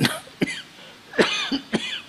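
An elderly man coughing into his hand, about four short coughs in under two seconds, picked up by a close microphone.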